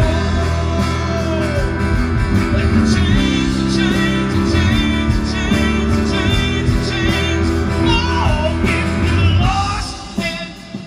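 Live band playing a song on electric and acoustic guitars and bass guitar, amplified through a PA, steady and loud.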